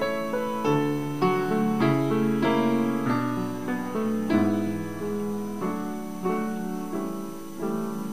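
Solo piano playing a slow piece of chords and melody notes, with a new chord struck every half second to a second.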